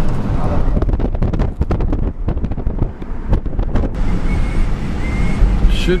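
Car driving along at road speed, heard from inside: a steady low road and engine rumble with wind buffeting the microphone. A run of sharp crackles and knocks lasts a few seconds in the middle.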